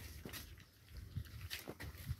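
Several puppies lapping milk from a shallow bowl: faint, irregular wet clicks of tongues in the liquid.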